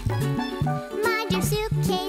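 Upbeat children's song music with a bouncing bass line, a steady drum beat and a wavering lead melody.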